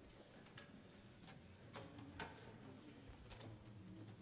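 Near silence in a small hall, broken by about five faint, scattered clicks and knocks; the two loudest come about two seconds in.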